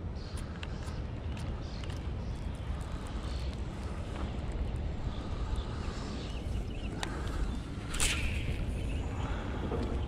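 Steady low outdoor rumble with faint ticking from a baitcasting reel being cranked to retrieve a lure. A sharp click comes about seven seconds in and a short scuff about a second later.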